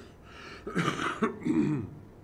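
A man clearing his throat in two short bursts in the second half.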